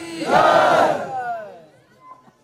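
Crowd of supporters shouting a slogan in unison: one loud burst of many voices, about half a second long, which then fades away.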